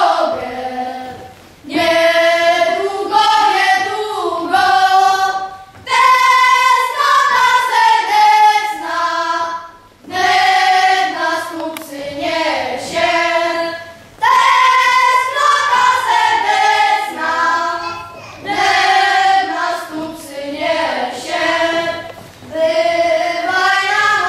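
A group of children singing together. The song comes in phrases of about four seconds, with a short break for breath between each.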